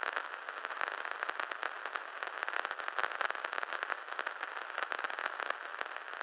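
Crackling static: a steady hiss thick with tiny pops and clicks, like a detuned TV or radio, used as an editing sound effect.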